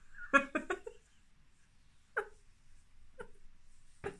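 A woman laughing: a quick run of short giggles right at the start, then two brief, quieter vocal sounds about a second apart.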